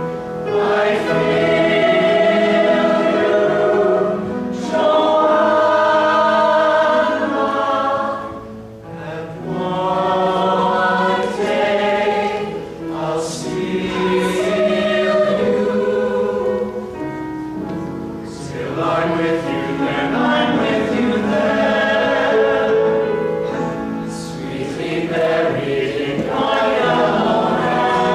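Chamber choir singing in parts, in sustained phrases broken by short breaths, with the deepest pauses about a third and two-thirds of the way through.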